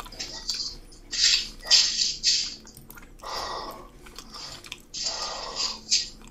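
Footsteps crunching and rustling through dry fallen leaves, in irregular bursts about a second apart.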